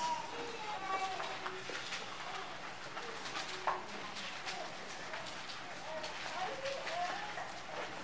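Faint, distant voices murmuring in a large room, well away from the microphone, over low room tone. There is a brief click about three and a half seconds in.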